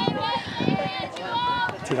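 People talking close to the microphone, their voices overlapping.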